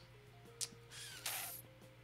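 Faint background music with soft held notes that change pitch slowly, with a single click about half a second in and a short hiss a little after the middle.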